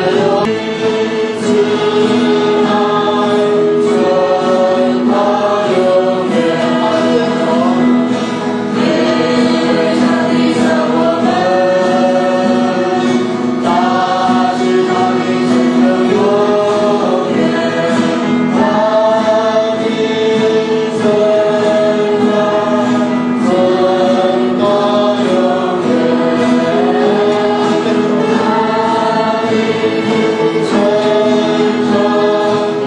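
A group of men and women singing a hymn together in unison to strummed acoustic guitars, steady and continuous.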